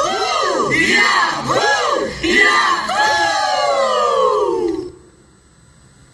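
A crowd of onlookers crying out together in drawn-out, rising-and-falling voices. The cries slide downward and die away sharply about five seconds in.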